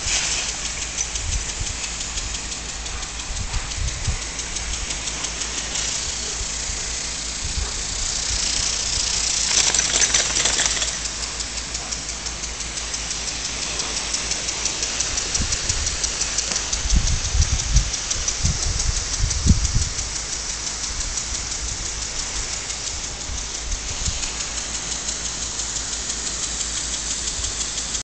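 Lawn sprinkler spraying water, a steady hiss that swells for a couple of seconds around a third of the way in. Low thumps on the microphone come near two-thirds of the way through.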